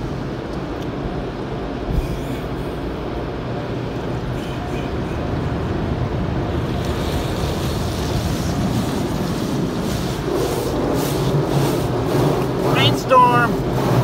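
Automatic car wash heard from inside the car's cabin: a steady rush of water spray and wash machinery on the body and windshield, growing louder and hissier about halfway through. A brief voice is heard near the end.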